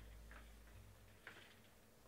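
Near silence broken by a few faint clicks and taps of hands handling a trading-card box, the clearest a little past halfway.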